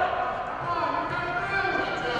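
Indistinct overlapping voices of spectators calling out, echoing in a school gymnasium.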